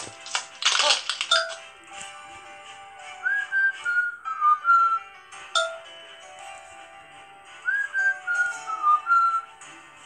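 Light instrumental background music from a children's story app, carried by a whistled tune whose short gliding phrase comes twice, about four and a half seconds apart, with a brief bright flourish about a second in.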